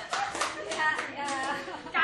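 A few people clapping their hands, scattered irregular claps, with faint voices underneath.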